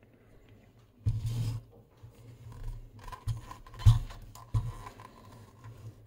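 Handling noise from the metal-chassised instrument being turned over in the hands: a short rustle about a second in, then a few sharp knocks and clicks, the loudest near four seconds.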